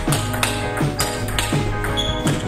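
Background music playing throughout, with sharp taps from a table tennis ball struck back and forth in a rally.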